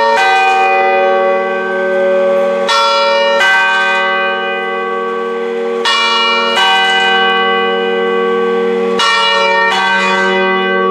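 Peal of bronze church bells cast by Eschmann in 1967, tuned es' g' b' c'', heard close up in the tower with a swinging bell in front. About seven clapper strokes land at uneven spacing, often two close together and then a longer gap, and each stroke rings on with a steady hum under the next.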